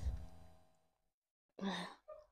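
A woman sighing while eating, the breathy sound fading out within the first second, then a short hum near the end.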